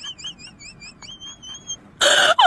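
Added comic sound effect: a high, whistle-like warbling tone wavering about five times a second, which about a second in settles into a steady held note that stops shortly before the end.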